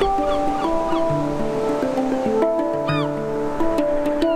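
A Meinl Sonic Energy Harmonic Art Pro steel handpan (HD6-WJ, a D scale around a low D center note) played by hand: single notes struck one after another and left ringing over each other, the deep center note sounding about a second in and again near three seconds. Ocean surf hisses softly behind.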